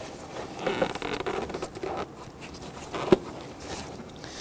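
Plastic engine cover scraping and rubbing in short bursts as it is worked around the oil fill tube, with a single sharp click about three seconds in.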